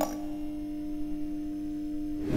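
A steady electronic tone held at one low pitch, with a weaker lower tone beneath it: a sustained hum from the title card's sound design, left alone as the intro music cuts off.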